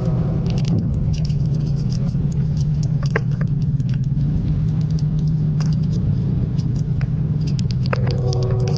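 Sugar glider eating a female silkworm moth held in its paws: small, irregular wet clicks and crackles of chewing and licking, over a steady low hum.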